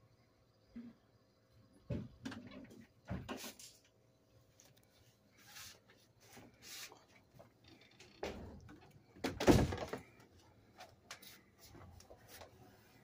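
Several irregular knocks and scraping rustles, the loudest a thump about nine and a half seconds in.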